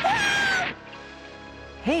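A woman's high, wavering scream over a crash of shattering glass and breaking wood, cut off suddenly less than a second in. Quieter background music follows.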